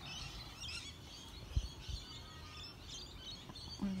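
Small birds chirping in the background, with a low thump about a second and a half in.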